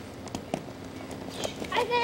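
Old home-recording audio with a faint steady hum and a few sharp clicks. Near the end a young child's high-pitched voice starts and grows louder.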